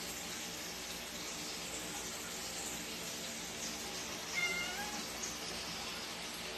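A domestic cat meowing once, a short call of under a second about four and a half seconds in, over a steady background hiss.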